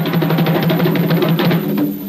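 Music: a fast drum roll over a held low bass note, part of a cumbia sonidero DJ spot; the roll thins out near the end.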